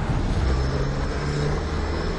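Taxi driving, heard from inside the cabin: a steady low engine hum with road noise.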